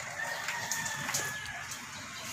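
A single long, level-pitched animal call lasting about a second and a half, heard faintly over low background hum.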